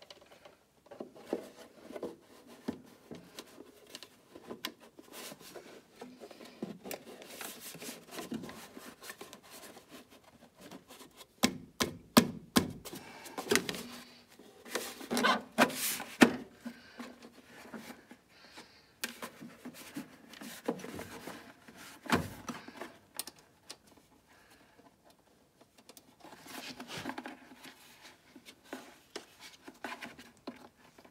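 Hands fitting a battery and its plastic cover into a snowmobile's battery compartment: scattered clicks, knocks and rubbing of plastic and metal, with a run of louder knocks around the middle.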